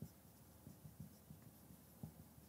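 Faint, short scratchy strokes of a marker pen writing on a whiteboard.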